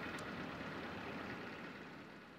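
Steady hum and hiss of a radio broadcast feed's background, with a faint click just after the start.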